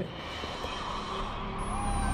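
A rising swell of noise over a low rumble that builds steadily louder into electronic background music, with a thin high tone gliding slowly down in the second half.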